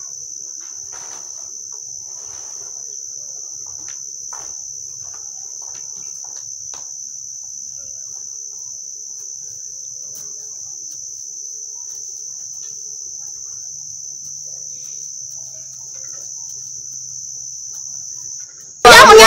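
Crickets trilling in one steady, unbroken high-pitched note, with faint scattered clicks and rustles beneath.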